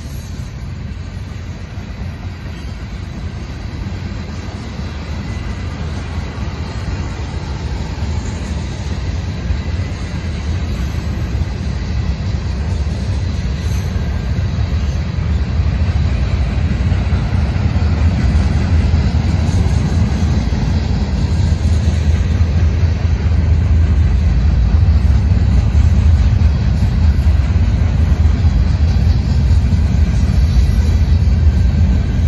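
Freight train cars rolling past on the rails: a steady low rumble that grows gradually louder.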